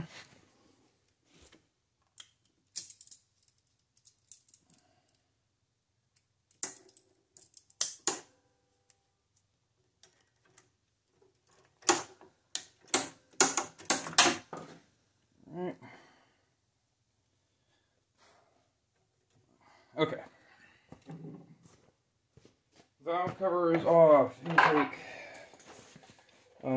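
Scattered metallic clicks and clinks of pliers working the hose clamp and fuel line off a small engine's carburettor, busiest in a cluster about halfway through.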